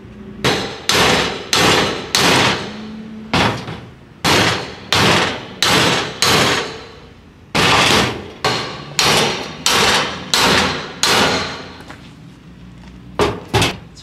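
Hammer blows on a pry bar wedged into a metal safe, a series of sharp ringing metal strikes about two a second, broken by short pauses, as the safe is forced open.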